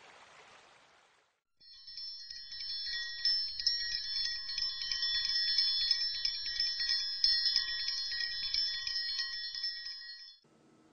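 A faint hiss for about the first second, then, from about a second and a half in, a steady cluster of high, shimmering chime-like ringing tones that goes on until it cuts off near the end.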